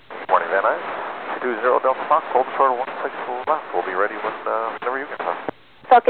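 Speech over an aviation VHF radio channel, heard with the narrow, hissy sound of a radio, keyed on at the start and cut off about half a second before the end. Another transmission keys in right after.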